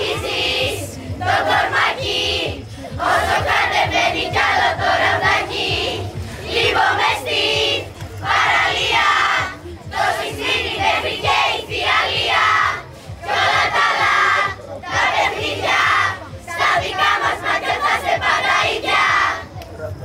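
A large group of girls chanting a team cheer together in unison, in short shouted phrases with brief pauses between them.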